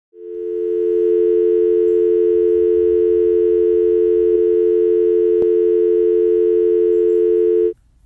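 A steady telephone dial tone of two low notes sounding together. It fades in over about the first second and cuts off suddenly just before the end.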